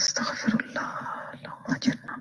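A woman's voice speaking low, with no clear words.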